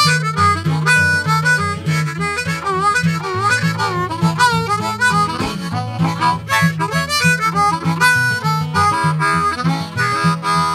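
Harmonica playing an instrumental break over a strummed acoustic guitar in a country-blues tune, its notes bending up and down about three to five seconds in.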